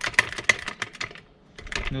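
Traditional hydraulic floor jack being pumped by hand, a quick run of metallic clicks and rattles from the handle and pump that stops about a second and a half in.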